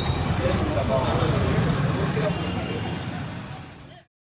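Street background noise: indistinct chatter of a group of people mixed with passing traffic, fading out over the last second.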